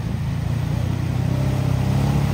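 Can-Am Outlander ATV engine running steadily as the quad churns through a flooded mud hole, growing slightly louder as it comes closer.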